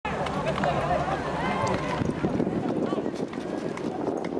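Young people's voices chattering and calling out, not close to the microphone, with scattered light knocks and scuffs from a football being kicked and dribbled on paving.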